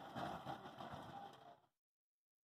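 Steam traction engine running faintly as it moves away, a low rumble that fades and then cuts off about one and a half seconds in.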